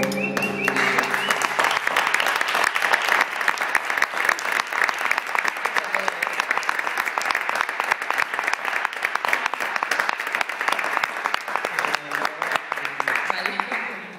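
Audience applauding at the close of a flamenco tangos song on Spanish guitars and voice; the last sung and guitar notes die away in the first second. The applause holds steady and falls away near the end.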